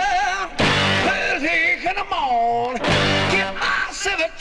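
Late-1960s rock band recording played from vinyl: a wavering lead melody with vibrato over guitar and full band chords, with heavy accents about once a second.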